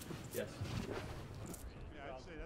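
Tree-marking paint gun spraying short hisses of paint onto a birch trunk, one near the start and one about a second and a half in.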